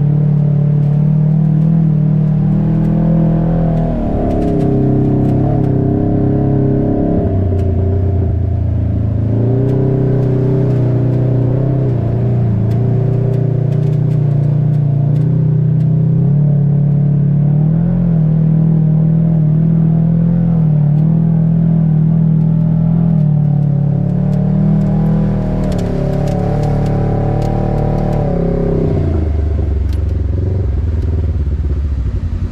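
Side-by-side UTV engine heard from the driver's seat, running under changing throttle as it drives through mud and water; the engine note falls and rises several times and drops low near the end.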